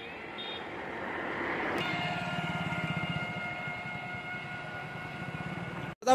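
A motor vehicle going by on the road: its noise builds, and about two seconds in a steady engine whine sets in over a low fluttering rumble, easing a little toward the end.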